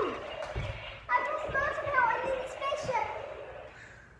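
A child's high-pitched, wordless vocalising with sliding pitch, with a thump about half a second in.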